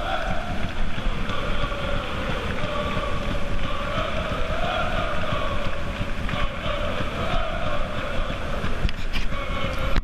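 A group of football supporters singing a chant together, heard from across the stadium as a steady, wavering drone of many voices. Wind rumbles on the microphone throughout.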